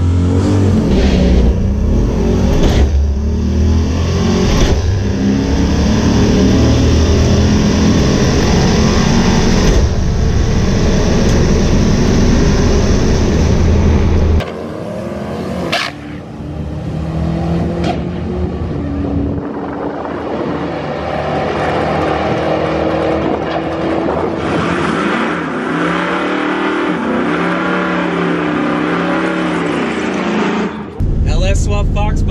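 Turbocharged two-valve V8 of a Ford Mustang Bullitt at full throttle on a quarter-mile drag pass, loud and deep as heard inside the cabin. About fourteen seconds in it drops suddenly to a quieter engine sound whose pitch rises and falls.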